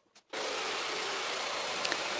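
Jigsaw running as it cuts a board along a straight guide: a steady noise that starts abruptly about a third of a second in.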